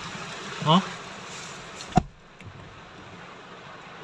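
Heavy rain on a moving vehicle, heard from inside the cabin as a steady hiss of rain and road noise. A single sharp knock comes about two seconds in, and after it the noise is quieter.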